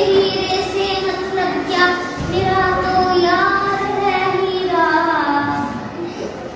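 A young girl singing solo and unaccompanied, holding long notes that bend and slide in pitch.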